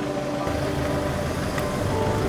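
A car moving off, its engine and tyre rumble coming in about half a second in, under steady background music.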